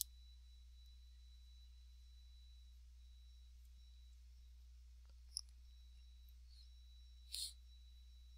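Near silence with a faint steady low hum, broken by a computer mouse click at the start, a fainter click about five seconds in, and a short soft noise near the end.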